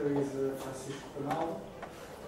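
A man speaking, in two short stretches of talk.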